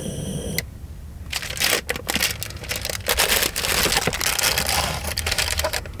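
Food wrappers crinkling and rustling in quick, irregular crackles as snack packs are handled and opened.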